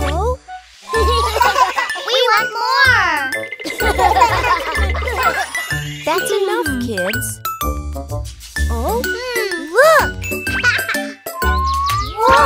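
Bouncy children's cartoon music with a regular low beat and jingling tones. Over it come wordless, swooping cartoon voices and pitch-gliding sound effects.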